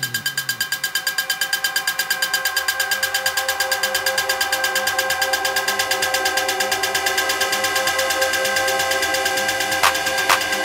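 Electronic dance track intro with little bass: a fast, evenly pulsing synth over steady held tones, with a sharp drum hit coming in just before the end. A falling pitch sweep from the jingle fades out in the first half second.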